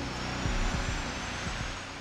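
SR-71's Pratt & Whitney J58 engine spooling up during start: a steady rushing noise with a faint high whine slowly rising in pitch.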